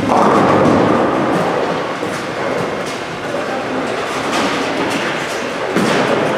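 Bowling ball landing on the lane and rolling down the wooden lane with a steady rumble that slowly fades, followed near the end by a sharp clatter of pins in the busy alley.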